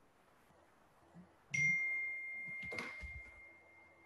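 A single high-pitched chime rings out about a second and a half in, one clear tone that fades away over two seconds or so, with a soft knock partway through.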